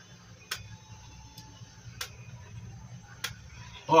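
Pizza wheel cutter slicing rolled dough into strips on a stone countertop: four sharp clicks, irregularly spaced, as the metal wheel meets the counter, over a steady low hum.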